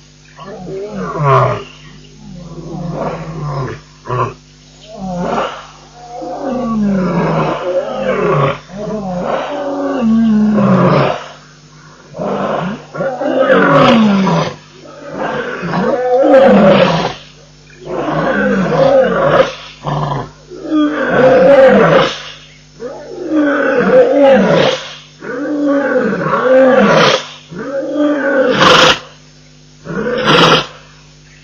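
Lion roaring: a long run of loud calls, each about a second long and falling in pitch, repeating every second or two and growing louder in the second half.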